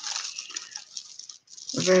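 A strand of small plastic faux-amber beads clicking and rattling softly against each other as the necklace is handled, followed by a woman's voice near the end.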